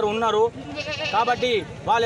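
A goat bleats once in the background, a short wavering high-pitched call about a second in, between bits of a man's speech.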